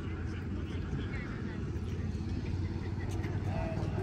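Outdoor background on an open airfield: a steady low rumble with faint voices of people at a distance.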